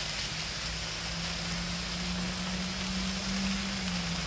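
Apple slices sizzling steadily on a hot Blackstone flat-top griddle, with a steady low hum underneath.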